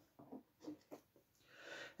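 Near silence with a few faint light clicks as two stemmed tasting glasses are picked up, then a faint breath drawn in near the end.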